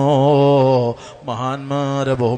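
A man's voice chanting in a drawn-out, melodic recitation style: a long held note that wavers in pitch, a short break about a second in, then the chant resumes.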